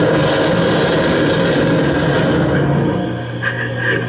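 Live electronic noise music from effects gear: a loud wash of hiss over steady low droning tones, the hiss fading away over the second half.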